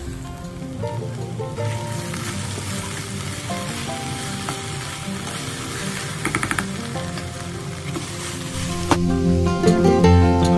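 Cut okra sizzling in hot oil in a non-stick frying pan, with a quick run of spatula scrapes as it is stirred about six seconds in.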